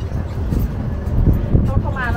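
Steady low rumble of an open-sided tour tram running along, heard from the passenger benches, with a voice coming in near the end.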